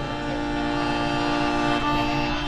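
Experimental electroacoustic music: an accordion holds a sustained, reedy chord of several steady notes over a low drone, and the upper notes shift near the end.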